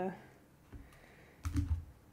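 A short cluster of light clicks and a soft knock about a second and a half in, after a drawn-out 'euh' fades.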